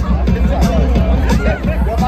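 Loud music over a festival PA with a steady heavy bass, mixed with a large crowd's babble of voices.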